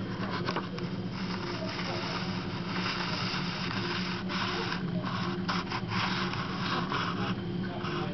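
Handling noise from a handheld camera being moved: rubbing and scraping on the camera body in uneven patches over a steady low hum.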